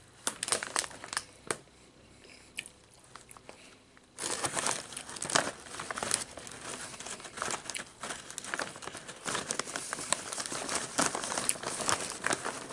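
Doritos Nacho Cheese chip bag crinkling as a hand rummages inside it for chips: a few sharp crackles in the first second or so, a lull, then continuous, loud crinkling from about four seconds in.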